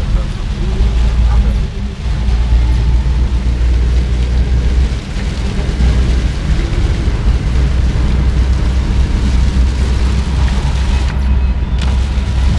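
Inside a moving car in heavy rain: a steady, loud low rumble of road and engine noise with rain on the car and wind buffeting the microphone.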